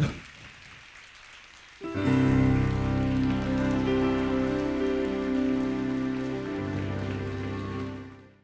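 Applause from a concert audience, fairly faint, then about two seconds in a louder closing music sting of held, slowly changing chords starts abruptly and becomes the loudest sound, fading out at the very end.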